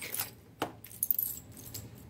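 Sterling silver medals clinking against one another as they are handled and one is picked up: a handful of light metallic clinks over the first second or so.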